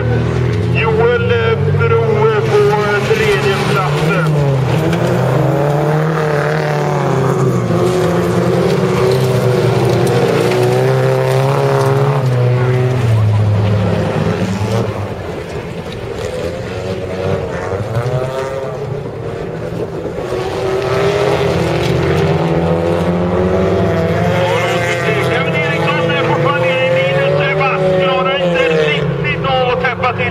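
Several race cars' engines revving hard and easing off as they race around a gravel track, the pitch climbing and falling over and over through gear changes and corners. The engines are quieter for a few seconds around the middle.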